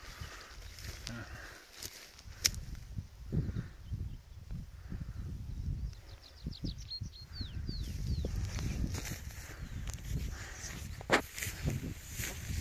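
Wind rumbling on a phone microphone, with a few handling knocks. About six seconds in, a small songbird sings a short phrase of quick, descending high notes.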